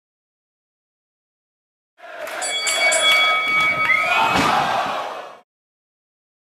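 After two seconds of silence, pro-wrestling arena crowd noise for about three and a half seconds, with a loud thud of the dropkick and wrestlers hitting the ring canvas about four and a half seconds in, then a sudden cut.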